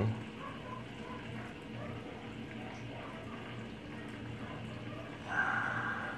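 Steady background room noise with a faint low hum, and a brief louder burst of noise a little before the end.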